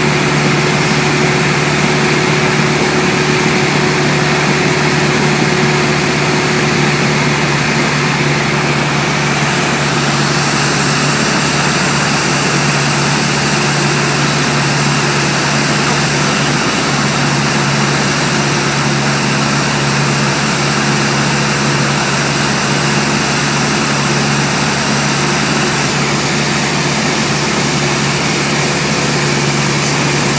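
Light aircraft's engine and propeller running steadily in flight, heard inside the cabin as a loud, even drone with a strong low hum.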